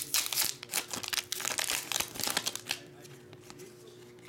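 Foil wrapper of a trading card pack crinkling as it is pulled open by hand, in dense crackles for about the first three seconds, then quieter.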